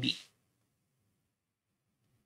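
A man's voice ends a word in the first moment, then near silence.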